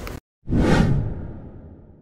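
A whoosh transition sound effect: a sudden swoosh about half a second in that fades away gradually.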